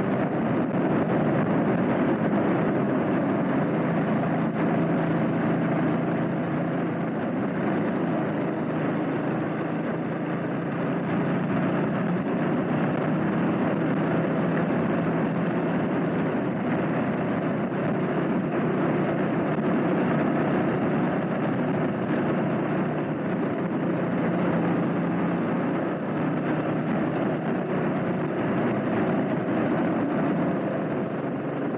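Honda CB400SS single-cylinder engine running at a steady, easy cruise, mixed with a constant rush of wind and road noise from the moving bike.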